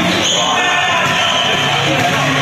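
A basketball bouncing on a hard indoor court floor, with voices in the hall.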